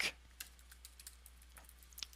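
Faint typing on a computer keyboard: a few scattered keystrokes.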